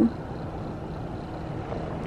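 Steady low rumble and hiss of a car running, heard from inside its cabin.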